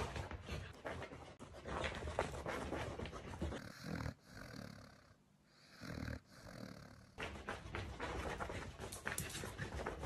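A corgi's close-up breathing noises: a fast run of crackly sniffing and breathing sounds, then in the middle two slow breaths about two seconds apart while it sleeps, then crackly sniffing again near the end.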